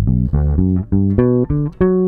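Electric bass playing a G major 7 arpeggio that climbs into its second octave: about eight single plucked notes, each a step higher than the last, with the final note held.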